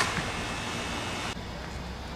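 Steady outdoor background noise, a hiss over a low rumble, with a sharp click at the very start. About a second and a half in, the background changes abruptly: the hiss drops away and a duller low hum remains.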